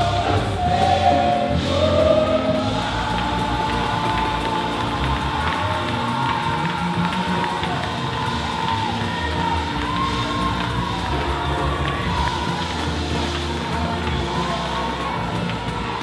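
Gospel praise music with a congregation singing, shouting and cheering, and hand tambourines jingling.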